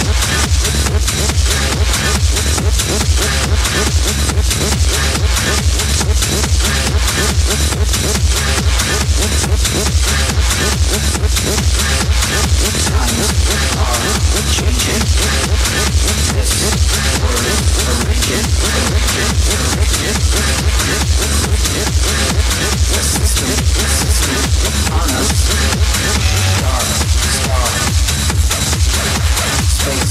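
Techno DJ set playing: a driving, evenly repeating beat over a continuous heavy bass line, loud and unbroken.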